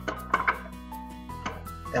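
Background music, over which a plastic Zip-It drain snake scrapes and clicks briefly as it is twisted in a bathroom sink drain: a short cluster about half a second in and another near the end.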